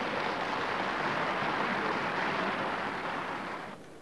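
Audience applause from the deputies in a parliament chamber, a dense steady clatter of many hands that swells in just before and fades out about three and a half seconds in.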